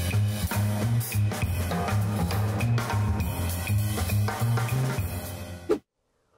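Background music with a steady drum beat and a bass line, which cuts off suddenly near the end.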